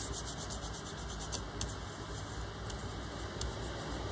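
Fingertips rubbing gold metallic paste over embossed cardstock: a faint, quick scratchy rubbing with light ticks as the fingers pass over the raised pattern.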